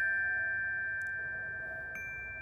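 Glockenspiel metal bars struck with mallets, their notes ringing on and slowly dying away, with a soft strike about a second in and another just before the end.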